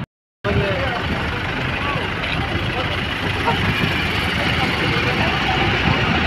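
Steady road traffic noise beside a highway, a vehicle running close by, with indistinct voices of people nearby. It begins after a split second of silence.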